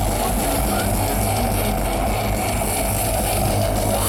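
Live heavy metal band at high volume: distorted electric guitars and bass guitar holding a steady droning sound over a low bass line, without clear drumbeats. The sound changes back to full riffing with drums right at the end.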